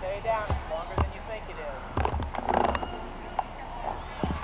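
Indistinct people's voices talking, with several dull thumps and a brief rustle about halfway through.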